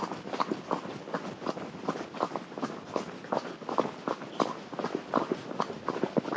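A horse's hooves striking a dirt and gravel track in steady hoofbeats, about three a second.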